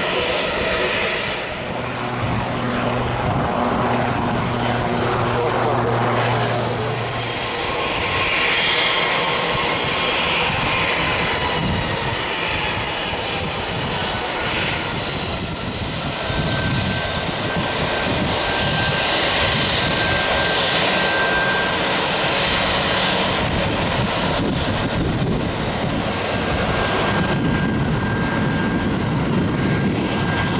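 Embraer E195 airliner's twin turbofan jet engines running at low power on the ground, a steady rushing drone. A steady high whine joins about halfway through.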